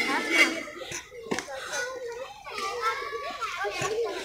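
Children's voices, talking and calling out while they play, with a couple of short knocks, one about a second in and one near the end.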